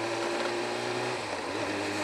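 Kawasaki ZX-7R inline-four motorcycle engine running steadily at low road speed, heard from the rider's helmet camera with a hiss of wind. Its hum dips briefly after about a second and then picks up again.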